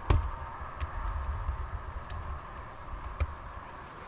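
Handling noise: one sharp knock right at the start, then three faint ticks over a low rumble.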